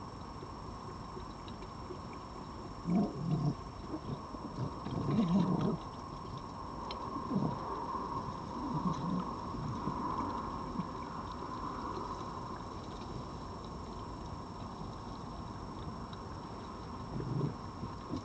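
Red foxes feeding at close range, making a few short, low, irregular sounds, loudest in clusters a few seconds in and again near the end.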